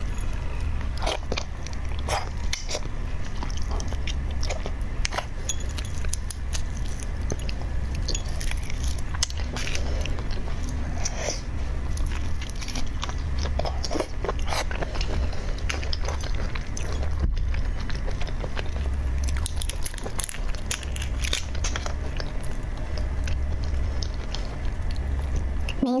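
Close-miked eating sounds of red shrimp meat being bitten and chewed: many short wet clicks and smacks from the mouth, over a steady low hum.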